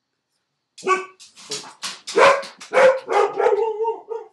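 A dog barking repeatedly in quick succession, about three barks a second, starting about a second in: barking at someone who has come to the door.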